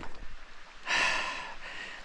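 A man's breath, one noisy exhale about a second in that fades away over the next second, from the effort of a steep uphill hike.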